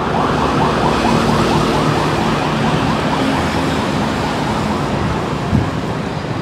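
Electronic siren sounding in quick, repeating rising whoops, about five a second, over a steady low hum.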